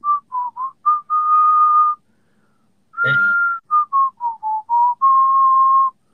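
A person whistling a short tune through pursed lips in two phrases: a few quick notes ending in a long held note, a pause of about a second, then a held note, a run of quick notes falling slightly in pitch, and another long held note.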